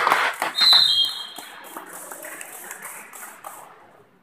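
Shouting carries into the start. About half a second in comes a short, high referee's whistle blast, which stops play. After it, a steady murmur of crowd and players fills the sports hall.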